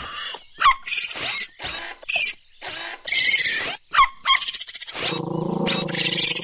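Cartoon raccoon sound effects: a string of short hisses and squeals from the raccoons as they close in. A low, steady growl begins about five seconds in.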